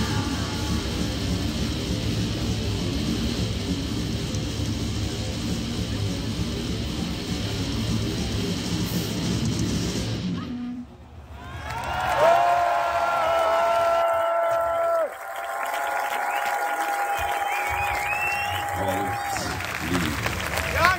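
A metal band playing live: a dense wall of distorted guitars and drums that stops abruptly about ten seconds in. The crowd then cheers, with long held shouts and whistles.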